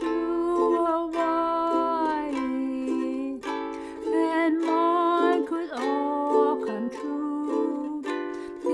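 Ukulele strummed steadily, with a woman singing over it, her voice wavering and gliding between notes.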